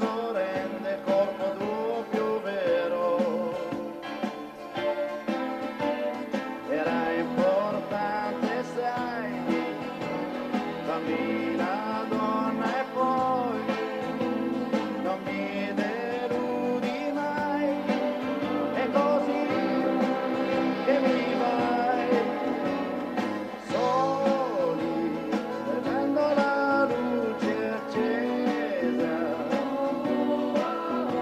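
Live pop band music: a male voice sings over guitars and a full band accompaniment, at a steady level throughout.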